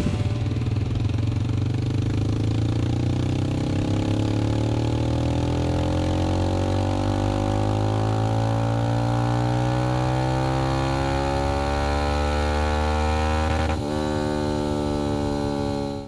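Kawasaki Z125 Pro's 125 cc single-cylinder four-stroke engine, fitted with a Daniel Crower Racing performance cam and a Yoshimura exhaust, making a wide-open-throttle pull on a chassis dyno. The engine note climbs slowly and steadily in pitch for about fourteen seconds, then changes abruptly near the end.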